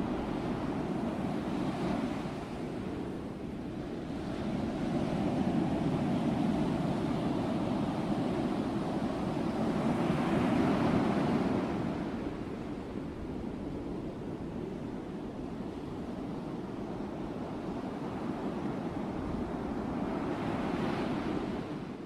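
Sea waves breaking and washing up the beach, a steady rush that swells and eases in slow surges, loudest about a third and halfway through.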